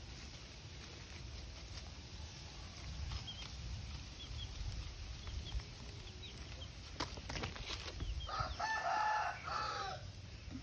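A rooster crowing once near the end, the loudest sound, over a low rumble. A few faint high chirps come earlier.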